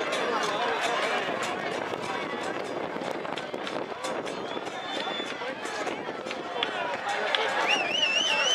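Many people's voices talking and shouting over one another outdoors, none clear enough to make out, with a few sharp claps or knocks. Shortly before the end a high whistle-like tone sets in, wavering up and down a few times a second.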